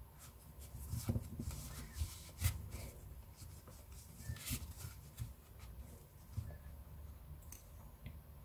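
Faint, irregular rubbing and rustling of thick T-shirt yarn being drawn through crocheted stitches by a large-eye needle, with a few sharper ticks from the needle and fingers; the strongest are about a second in, around two and a half seconds and around four and a half seconds.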